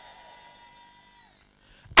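Faint sustained electronic keyboard note, fading out and dipping slightly in pitch as it stops about a second in. Brief quiet follows, then a man's voice at the very end.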